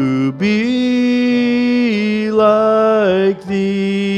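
A man singing a slow hymn through a microphone and PA, holding long, drawn-out notes with short breaths between them, over acoustic guitar accompaniment.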